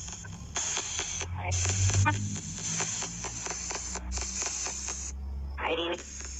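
Spirit box scanning radio frequencies: choppy bursts of static and broadcast fragments, switching about five times a second with brief dropouts.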